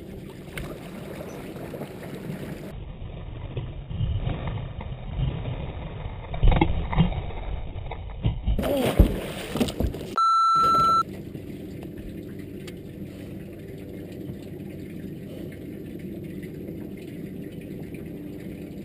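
Steady wind and water noise on the deck of a bass boat, with a few loud low thumps in the middle. About ten seconds in, a steady high electronic beep lasts just under a second.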